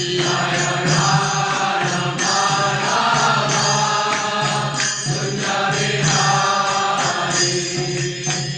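Devotional mantra chanting, sung over a steady low drone.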